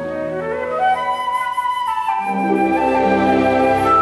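Orchestra playing a slow, impressionistic passage: a woodwind line climbs in steps while the low accompaniment thins out, then the strings come back in with sustained low chords a little past halfway.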